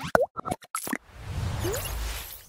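Sound effects for an animated logo sting: a quick run of pops in the first second, then a swelling whoosh with a deep rumble underneath.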